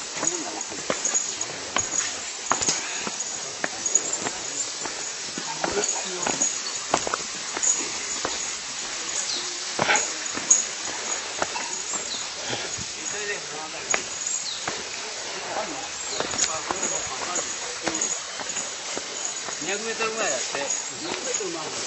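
Indistinct chatter of a group of walkers, with scattered footsteps and short clicks on the path.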